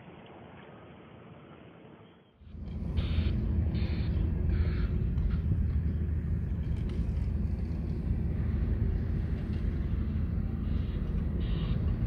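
Faint outdoor noise, then a sudden switch about two seconds in to a loud, steady low rumble that lasts to the end.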